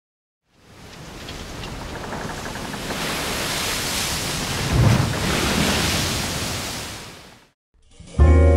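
A rush of noise for a logo sound effect swells up, with a low boom about five seconds in, then fades out shortly before the end.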